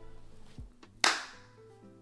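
A single sharp hand clap about a second in, ringing out briefly, over the faint fading tail of music, with a couple of soft taps before it.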